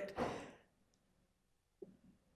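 A woman's breathy exhale trailing off the end of a spoken word and fading out within about half a second, followed by a pause of near silence with a brief faint lip or mouth sound near the end.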